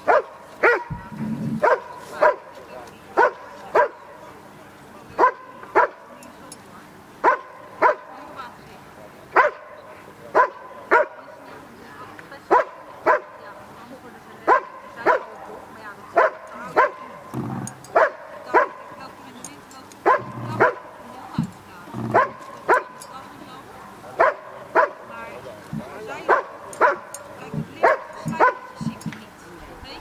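A dog barking repeatedly in short, sharp barks, about one or two a second with brief gaps: a protection dog's bark-and-hold at the helper in the blind.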